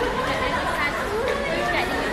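People talking: indistinct speech and chatter over the background hubbub of a busy shopping mall.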